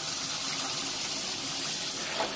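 Water spraying steadily from a shower panel's body jets, an even hiss of running water.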